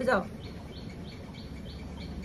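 A steady run of short, high chirps, all alike and evenly spaced at about three a second, over faint room noise.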